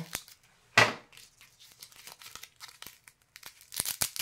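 Paper packaging of Velcro adhesive dots being torn open and crinkled by hand: one sharp tear about a second in, then light crackling and rustling, busier again near the end.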